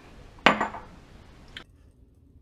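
A bottle set down on a granite countertop: one sharp clack with a brief ring about half a second in, then a light click about a second later.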